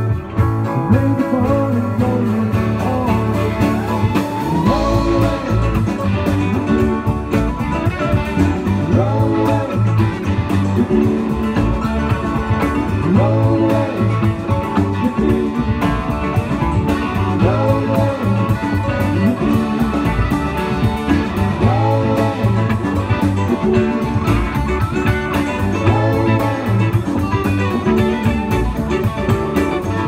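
Live rock band playing continuously: electric guitars, electric bass, drums and a Nord Electro keyboard.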